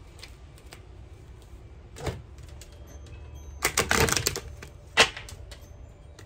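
A tarot deck being shuffled by hand. There is a click about two seconds in, a quick half-second run of fluttering card clicks just after the middle, and a sharp snap near the end.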